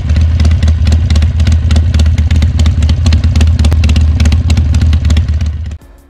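Motorcycle engine running: a loud, steady low rumble of rapid exhaust pulses that cuts off suddenly near the end.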